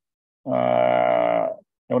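A man's drawn-out hesitation sound, one held "eee" or hum of about a second at a steady pitch, between phrases of speech; a spoken "ya" begins at the very end.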